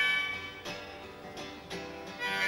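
Acoustic guitar strummed in a brief gap between harmonica phrases: the harmonica's held notes die away at the start, then a few strokes of the guitar carry on quietly.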